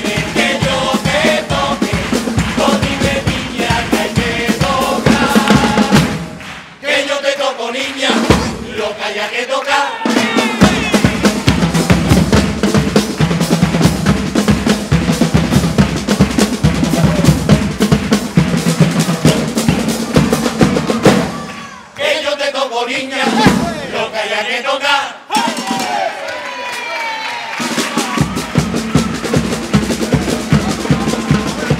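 Live carnival band music from a murga dressed as a charanga: bass drum and snare beating under brass and wind instruments playing the tune. The drums drop out briefly twice, about seven and about twenty-two seconds in, leaving the melody on its own.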